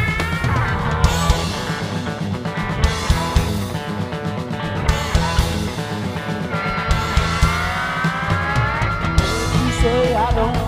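A live rock band plays an instrumental break between verses. An electric guitar lead holds and bends notes over bass guitar and drums. Its notes slide upward in the second half.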